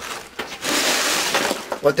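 Loose drainage stone in a trench being raked and shifted by hand, a gritty scraping rustle lasting about a second.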